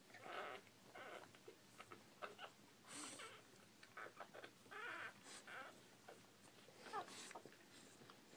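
Faint, short squeaks and whimpers of a newborn Bull Pei puppy, with one rising squeak about seven seconds in.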